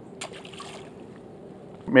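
A skipjack herring tossed back into the water lands with one short splash, about a quarter second in.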